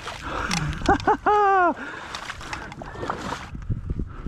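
A person's loud, excited whoop: two short yelps, then a longer, louder cry that rises and falls in pitch.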